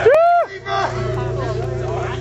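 A loud yell from a person close by in the audience, lasting about half a second and rising then falling in pitch. It gives way to crowd chatter over a steady low hum.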